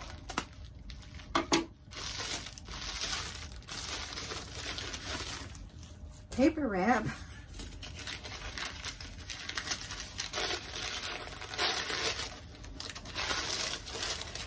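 Plastic bubble wrap and then brown packing paper rustling and crinkling almost without pause as a wrapped item is unpacked by hand.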